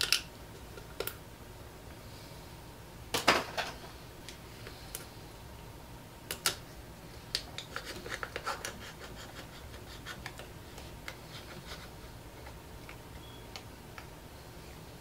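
Scattered small clicks, taps and scratches of objects being handled off to one side, over a steady low hum. The loudest cluster comes about three seconds in, and a busier run of ticks follows around eight seconds in.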